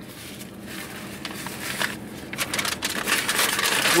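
Paper sandwich wrapper being handled and crumpled, a crinkling, crackling rustle that grows louder over the last couple of seconds.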